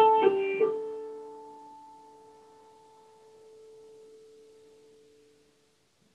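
Grand piano: a few notes struck in the first second of a phrase, then held and left to ring, dying away over about two seconds into a pause in the music.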